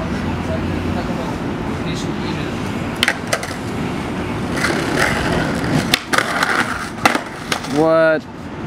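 Skateboard on a concrete and tile ledge: a steady rolling rumble of the wheels, then sharp clacks of the board about three seconds in and several more knocks later on. A short voice call comes right at the end.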